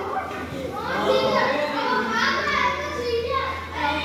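Children talking and calling out to each other while they play in an indoor games room.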